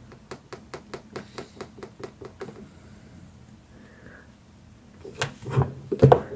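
A quick, even run of about a dozen light clicks, about five a second, then a few louder knocks near the end, from hands working alligator-clip test leads and a multimeter on a tile counter.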